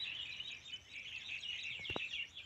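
Small birds chirping, many short high chirps overlapping in a steady, busy chorus.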